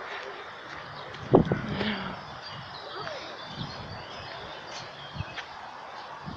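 Open-air background with faint bird chirps, broken by a single sharp thump a little over a second in.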